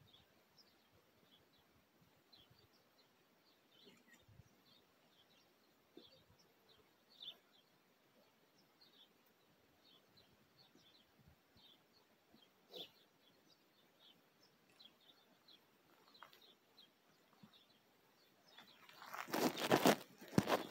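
Faint outdoor ambience with scattered short bird chirps, broken by a couple of faint knocks. Near the end a loud rough rustling noise builds up as the camera is handled.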